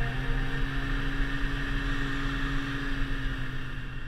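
Snowmobile engine running steadily as the sled cruises along a packed snow track, a continuous drone that begins to fade near the end.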